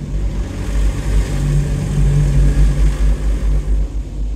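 Automatic car wash machinery working on the car, heard from inside the cabin: a low rumble with a steady hum that swells about a second in and eases near the end, under a hiss. It is a funny sound that seems a little scary.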